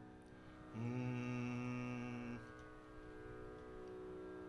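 A man's voice holds one steady sung note for about a second and a half, starting about a second in, pitching the key before a Carnatic nottuswaram. A faint steady drone continues under it and after it.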